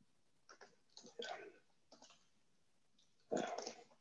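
Faint computer keyboard typing: a few scattered keystrokes, then a louder short burst of sound near the end.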